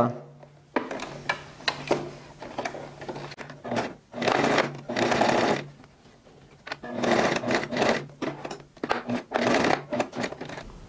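Domestic electric sewing machine stitching a seam, starting with a few reverse stitches to lock it. It runs in bursts, with a short stop a little past halfway.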